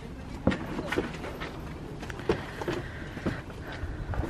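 Folded stroller wagon's metal frame being lifted and slid into a car's cargo area: a few scattered light knocks and clicks as the frame bumps and rattles.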